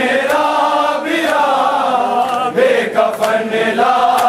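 A group of men chanting a Shia noha (mourning lament) in unison, with sharp slaps of hands striking bare chests in matam breaking through the singing.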